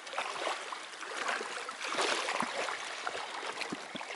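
Fast river water rushing steadily over a shallow run, with a spinning reel being cranked to reel in a hooked grayling and a few faint clicks.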